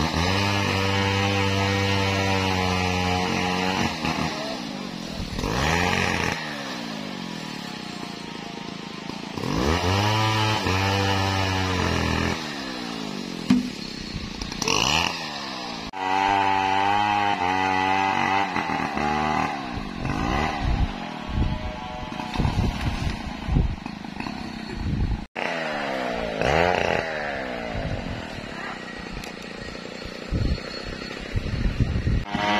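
A two-stroke chainsaw running in bursts: held at a steady pitch for a few seconds at a time, with quick rises and falls in pitch between.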